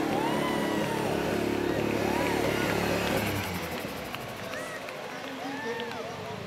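Rally car engine running steadily at low revs, with voices from the crowd over it; the engine sound drops away about three seconds in.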